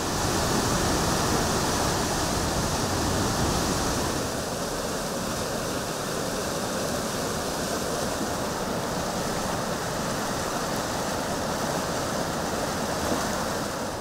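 Fast-flowing muddy floodwater rushing in a swollen river: a steady, loud rush of water, a little quieter after about four seconds.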